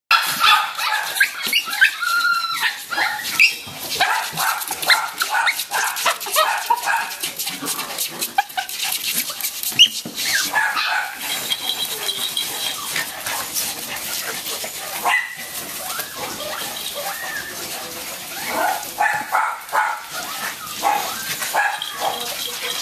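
SilkyTon and HavaTzu puppies yapping and whining in short, high-pitched bursts as they play-fight, over a rustle and scratching of shredded paper bedding under their paws.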